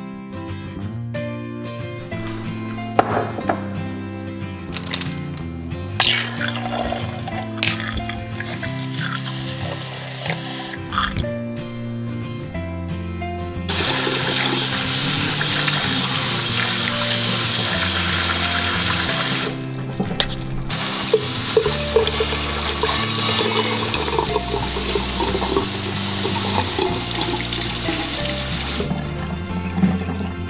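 Background music throughout, with tap water running onto fruit in a stainless steel colander in a sink. The water runs in long stretches, stopping briefly about eleven seconds in and again a little before the twentieth second.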